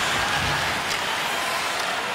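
Steady crowd noise in an ice hockey arena during play, with a faint click about a second in.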